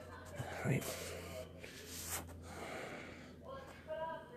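A man's breathing and a single murmured word close to a phone's microphone, with light handling rustle over a low steady hum.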